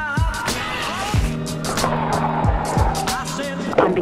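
Hip-hop instrumental beat with deep bass kicks that drop in pitch and sharp hi-hats. Partway through, a gritty scrape of skis sliding along a stone wall ledge runs under the music for about a second.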